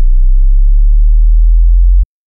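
A loud, steady, very deep sub-bass tone, a low hum with almost nothing above it, that cuts off abruptly at the end.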